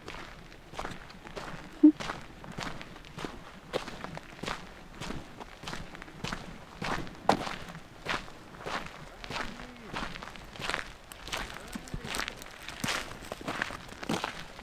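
Footsteps of a person walking at a steady pace along a dirt track, about one and a half steps a second. A short, sharp sound about two seconds in is the loudest moment.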